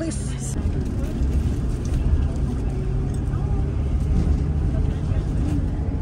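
Inside a moving coach: steady low engine and road rumble as the bus drives along.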